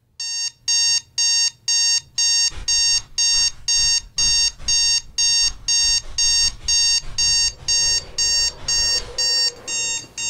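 Digital alarm clock going off: a steady run of short electronic beeps, about two a second, each at the same pitch.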